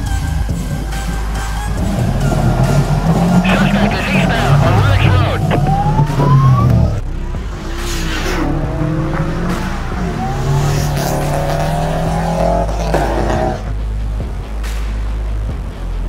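Car engine revving hard through the gears, its pitch climbing and dropping at each shift, with a brief rising tyre squeal about five to six seconds in. The engine note falls away near the end.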